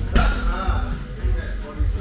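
Background music with a heavy, pulsing bass beat. Just after the start, a single sharp smack as a sparring kick lands on padded gear.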